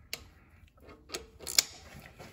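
Ratchet wrench clicking as a socket tightens a new downstream oxygen sensor into the exhaust pipe: a few sharp clicks, the loudest about one and a half seconds in.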